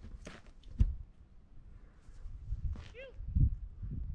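Footsteps and camera-handling noise on a dry, rocky dirt trail, uneven and scuffing, with a sharp knock about a second in and a short high chirp near the three-second mark.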